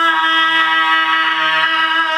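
Male rock singer holding one steady high sung note, with grit (vocal distortion) swelling into the tone partway through and easing back toward the end.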